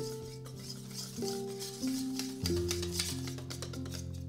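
Background music with a slow melody of held notes, over a wire whisk beating batter in a stainless steel bowl, ticking and scraping against the metal many times a second.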